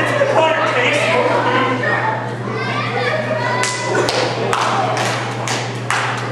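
Spectators shouting and calling out at a wrestling show. From a little past halfway there is a quick run of sharp thuds.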